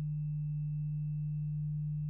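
Steady electrical hum from the microphone and sound system, a low buzz with a row of fainter higher overtones that does not change.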